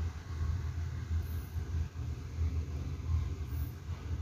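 A low, steady background rumble.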